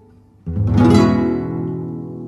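Acoustic guitars and a guitarrón play the closing chords of a Cuyo folk gato. After a brief pause, a final strummed chord comes in about half a second in and rings out, slowly fading.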